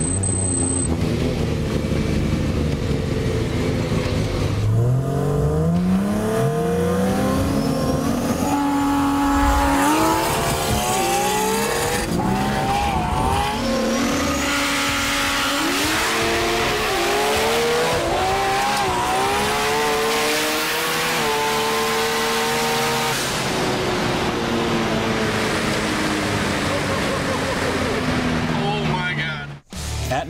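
Two turbocharged Nissan GT-Rs, an R35 and an R32, racing from a standing start: their engines climb in pitch through the gears, dropping back at each shift, then ease off near the end.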